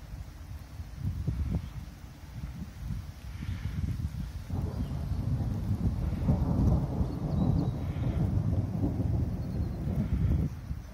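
Thunder rumbling overhead: a low rolling rumble that swells from about halfway through and stays loud.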